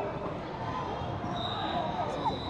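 Basketball game sounds in a large gym: a ball bouncing on the hardwood court amid players' and spectators' voices. A steady, thin high-pitched tone starts about a second and a half in and holds.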